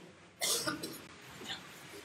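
A single short cough about half a second in, quiet next to the surrounding speech, followed by a few faint small sounds.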